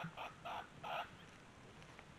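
A chicken clucking in a quick run of short, faint calls, about three a second, stopping about a second in.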